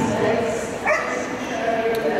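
A dog gives a single short yip about a second in, over steady background chatter from people around the ring.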